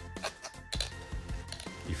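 Soft background music with steady held tones, under a few light clicks of plastic toy parts being handled and fitted together.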